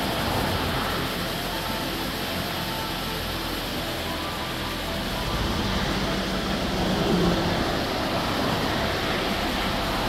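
Steady rush of the River Wye's white water tumbling over a rocky cascade.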